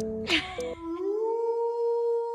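Brief guitar music and a voice. Then, about three-quarters of a second in, a single long howl begins: a drawn-out tone that glides up in pitch and then holds steady, opening an intro sting.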